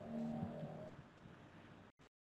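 Faint soundtrack of an old promotional film heard through a screen share: a few held low tones that fade after about a second and cut off abruptly just before the end.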